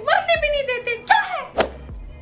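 A woman's high, wordless vocal sounds gliding in pitch, then a single sharp thunk about one and a half seconds in.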